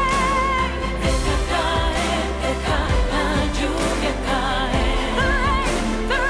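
A pop song from the Eurovision 2014 contest. A singer holds long notes with vibrato near the start and again near the end, over a full band backing.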